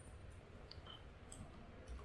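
Near silence with a few faint, short clicks from a computer keyboard and mouse as code is edited.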